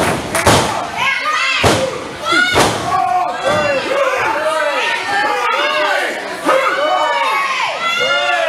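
A wrestling referee's hand slapping the ring mat three times, about a second apart, counting a pinfall, with a crowd of voices yelling throughout.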